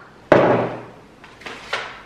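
A kitchen cabinet door shut with a bang about a third of a second in, ringing briefly, then two lighter knocks as items are set down on the countertop.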